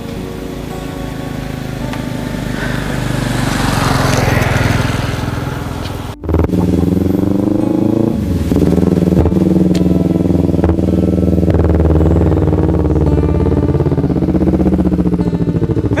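Sport motorcycle engine getting louder as the bike approaches, then running close by at low revs. After a brief drop-out about six seconds in, the engine note is steady, with a short rise in pitch a couple of seconds later.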